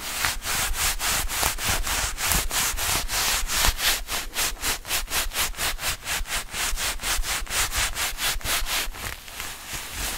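Leather-gloved hands rubbing and scratching over a microphone's metal mesh grille in fast, even strokes, about four a second, easing off near the end.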